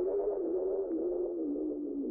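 Electronic dance music at the very end of a track: a single synth note slides slowly down in pitch with a slight wobble as its brightness dims.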